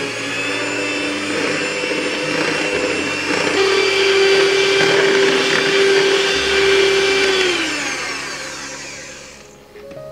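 Electric hand mixer running, its twin wire beaters creaming a butter batter in a glass bowl: a loud, steady motor whine that swells in the middle, then drops in pitch and dies away near the end as the mixer is switched off.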